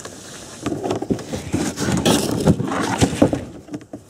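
Close handling noise: rustling with a run of light knocks and scrapes as a hand moves about a plastic cooler, deck carpet and rope in a boat.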